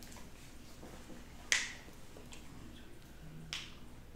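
Two sharp clicks, the first about a second and a half in and the second about two seconds later, over quiet room tone.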